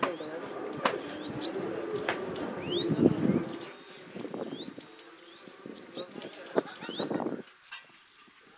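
Birds calling with short rising whistles, three or four times, over a low murmur of distant voices, with a few sharp clicks.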